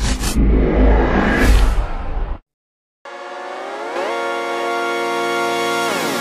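Cinematic logo-reveal sound effect: a deep rumbling bass with a few sharp hits at the start and a whoosh about a second and a half in, cut off suddenly after a little over two seconds. After a short gap, an electronic synth chord slides up in pitch and then holds steady.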